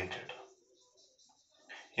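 A man's voice trails off in the first half second, followed by a near-silent pause holding only faint scratches of a marker on a whiteboard.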